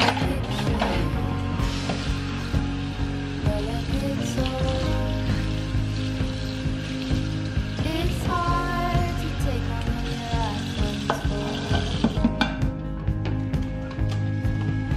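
Tap water running into a stainless-steel sink while dishes are rinsed by hand, a steady hiss with light clinks of pans and utensils.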